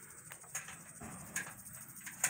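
Faint outdoor background with a couple of light clicks, one about half a second in and one near a second and a half.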